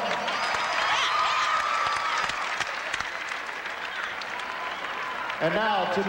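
Arena crowd applauding, with scattered cheers, during a post-game medal presentation. A man's voice starts near the end.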